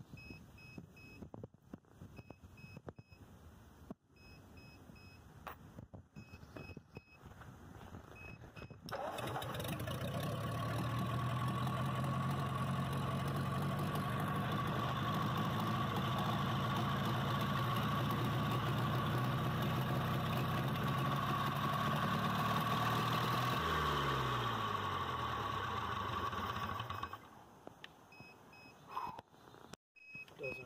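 Ford 8N tractor's four-cylinder flathead engine catching suddenly about nine seconds in after years unstarted, then running steadily and loudly for about fourteen seconds. Its pitch then falls as it slows and it dies a few seconds before the end. Before it catches and after it stops, a faint electronic beeping repeats.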